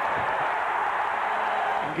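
Basketball arena crowd noise from an old TV broadcast, a steady roar as the home team breaks on a fast break.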